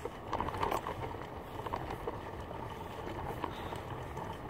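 Toy doll stroller wheels rolling over asphalt while it is pushed along at a walk, a steady rough rolling noise with a few light irregular knocks.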